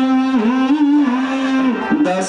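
Kashmiri Sufi ensemble music: one long, held melodic line that bends smoothly between a few notes, dipping briefly twice, over the ensemble's accompaniment.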